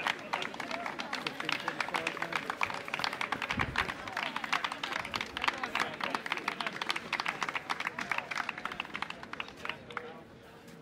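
Spectators clapping runners in at the finish of a road race, a steady patter of many hands over crowd voices, easing slightly near the end. A single low thump comes about three and a half seconds in.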